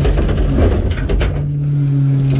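A rear-loader garbage truck's cart tipper dumps a cart into the hopper. Knocks and thuds of the cart and falling trash come in the first second or so. Under them runs the low rumble of the truck, and a steady, even-pitched hum from its running hydraulics comes up about halfway through.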